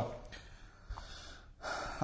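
A man's short in-breath near the end, a breathy hiss without pitch. Before it is quiet room tone with one faint tick.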